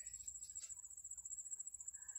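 Faint insect trill: one steady high-pitched tone with a fine pulsing texture, over a weak low hum.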